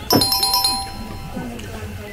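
A shop-door bell chime rings once, struck sharply at the start and ringing on with clear, bell-like tones that fade out over about a second, with quiet voices of other customers underneath.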